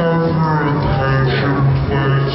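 Music with a steady low drone and a wavering melody line above it.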